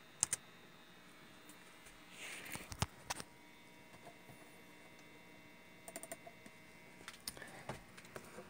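Faint, scattered clicks of laptop keys, coming in a few small groups, over a faint steady hum.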